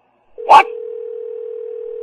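A steady single-pitched telephone tone on the line, as when a call has been dropped, starting about half a second in and continuing to the end.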